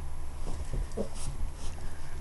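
A giant schnauzer puppy making a few short, soft vocal sounds, over a low steady hum.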